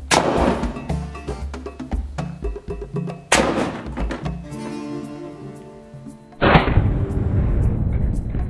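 Compressed-air rocket launcher of copper pipe firing a paper rocket as its valve is released: a sudden blast of air, heard three times (at the start, after about three seconds, and past six seconds), the last the loudest with a longer rush of air dying away. Background music with a beat plays underneath.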